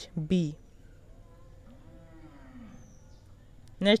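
Faint, drawn-out animal call in the background, about a second long, rising and then falling in pitch.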